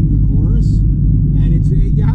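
Steady low drone of engine and tyres inside a moving Honda Civic's cabin, with a man talking over it.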